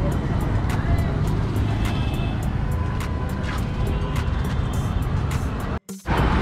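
Street traffic noise: a steady low rumble of passing cars and motorbikes, cutting out briefly near the end.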